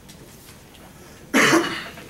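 A single short cough about one and a half seconds in.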